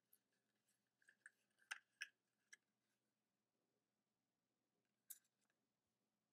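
Near silence, with a few faint crinkles of construction paper being curled around a pencil, clustered about two seconds in and once more near the end.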